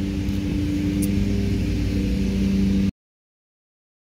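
Steady hum of a running machine: a low drone with two strong steady tones. It cuts off abruptly about three seconds in.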